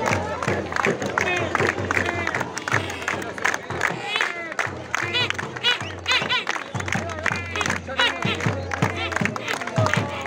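A marching crowd clapping their hands and chanting, many voices at once.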